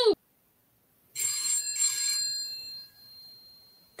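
Telephone ringing once, starting about a second in and fading out after under two seconds.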